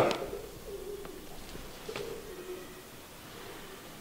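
A bird calling faintly in two low, drawn-out phrases, one early and one around the middle, with a couple of faint ticks.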